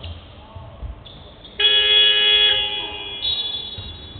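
Basketball arena's shot-clock buzzer sounding once, about a second and a half in, a loud steady horn held for about a second before it fades, marking a shot-clock violation. A shorter, higher tone follows about three seconds in.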